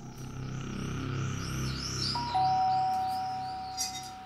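A two-tone doorbell rings about halfway through: a higher tone and then a slightly lower one, held together for a couple of seconds. Underneath is low background music with a faint high chirping.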